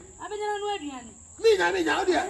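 A person's voice draws out one long held exclamation of about a second that falls in pitch at its end, then breaks into quick speech. A steady high-pitched whine runs underneath.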